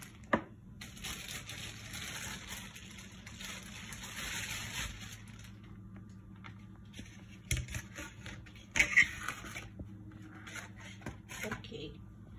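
Kitchen handling noises: a sharp knock, a few seconds of rustling or scraping, then a couple of clatters near the end, as a plate and cooked tortilla are handled on the counter.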